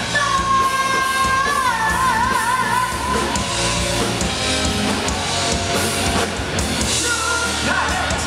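Heavy metal band playing live, the singer holding a long note, then stepping up to a higher one sung with a wide vibrato, over electric guitars and drums.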